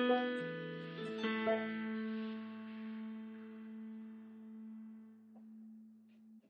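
Digital piano playing single bass notes: a B, then a low A about a second in that is held and slowly fades out near the end.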